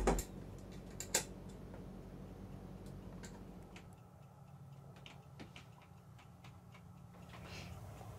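Scattered light clicks and taps from a stainless ceiling light fixture and its wiring being handled and taken down, a sharper click about a second in, over a faint steady low hum.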